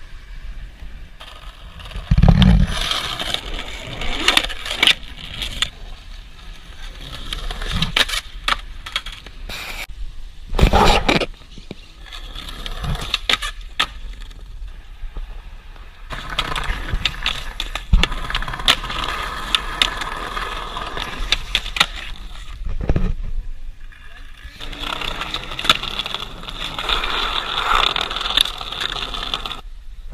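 Skateboard riding on pavement: wheels rolling over rough ground, with frequent sharp clacks of the board, and loud thumps about 2, 11 and 23 seconds in. Voices are heard at times.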